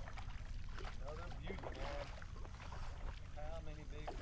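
Quiet, steady low rumble of wind on the microphone, with faint muttered speech about a second in and again near the end.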